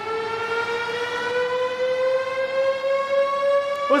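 Ambulance siren wailing: one long, steady tone climbing slowly in pitch.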